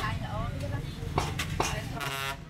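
Steel meat cleaver chopping pork on a round wooden chopping block: a few quick, sharp strikes in the second half, heard over people talking.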